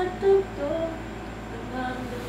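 A woman's voice humming a melody, with a short loud note about a third of a second in, then softer, wavering notes.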